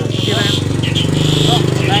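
A small motorcycle engine running close by with an even, rapid putter, swelling louder about a second in.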